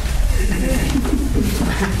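Low voices of people in a room, without clear words.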